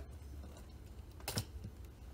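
A sharp click about one and a half seconds in, then a fainter tap, from the spinning cork board being handled as it is turned round in its wooden frame.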